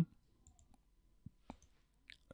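Computer mouse clicks: two faint, short clicks about a quarter of a second apart, roughly a second and a half in.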